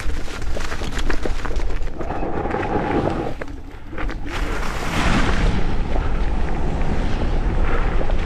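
Wind buffeting the microphone of an electric scooter riding fast down a leaf-covered dirt trail, a constant low rumble. The tyres roll over leaves and rough frozen ground, with sharp knocks from bumps in the first couple of seconds and again about three seconds in.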